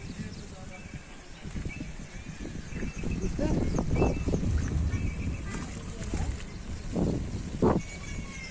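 Outdoor field recording of a low, steady rumble with people's voices in the background; it gets louder for a couple of seconds near the middle and again near the end.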